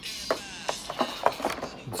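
Stiff clear plastic blister packaging being handled, giving a run of sharp crackles and clicks.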